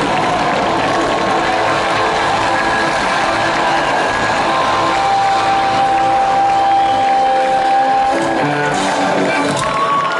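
Live concert music played loud through a festival PA, heard from inside the crowd, with the audience cheering and shouting. A long held note rings through the middle, and the bass drops away near the end.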